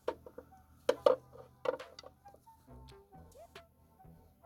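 A steel pry bar clicking and knocking against the plastic internal filter and the metal of the gearbox as the filter is levered into place. The sharp taps are irregular, the loudest about a second in, with brief ringing notes between them.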